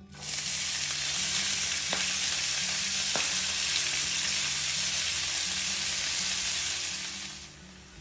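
Chopped Malabar spinach (bachali kura) leaves sizzling in hot oil in a nonstick frying pan, a loud steady hiss that starts as the leaves go in and fades out shortly before the end.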